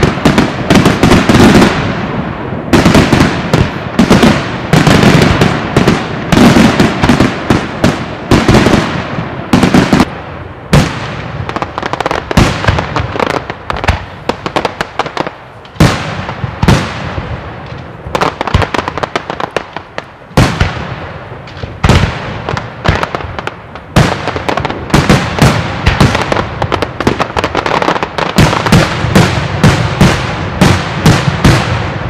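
Daytime fireworks display: aerial shells bursting overhead in a dense, rapid string of loud bangs. It thins a little through the middle, where several single louder bangs stand out, then packs tight again near the end.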